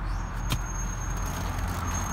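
2007 BMW X5 engine idling, heard from inside the cabin as a steady low hum, with a single sharp click about half a second in.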